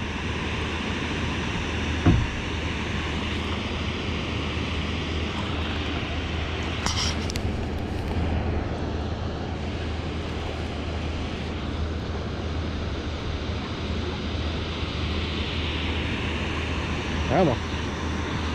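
Steady rushing roar of water pouring through a dam's spillway gates, with a low steady rumble underneath and a single sharp click about two seconds in.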